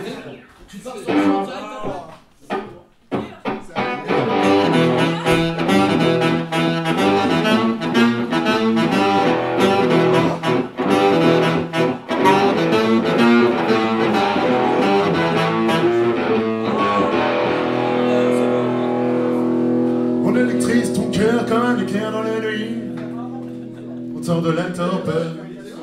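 Acoustic band playing live: guitar and other instruments over a steady, even beat, then from about seventeen seconds in a long held chord that fades a little near the end. Brief talking in the first few seconds.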